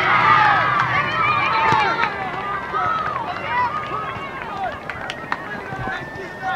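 Several high voices shouting and calling over one another during a youth soccer game, loudest at the start and thinning out. A few sharp knocks cut through, one near two seconds in and two close together after five seconds.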